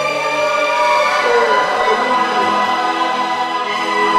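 Slow worship music played on an electronic keyboard, long held chords with voices singing along.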